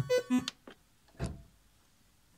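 Prophet Rev2 synthesizer playing a rhythmic run of short repeated keyboard notes that stops abruptly about half a second in. A single soft knock follows about a second in.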